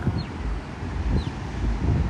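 Wind buffeting the microphone as an uneven low rumble, over a steady outdoor hiss.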